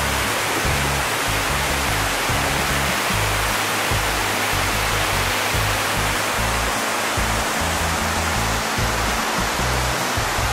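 Waterfall, close by: a steady, loud rush of water pouring over the falls and splashing on the rocks below.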